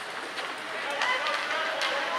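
Indistinct voices of players and spectators echoing around an indoor ice rink, with a couple of sharp clicks, one about half a second in and one near the end.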